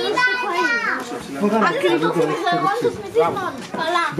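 Voices: a child's high-pitched voice in the first second, then mixed child and adult talking with no clear words.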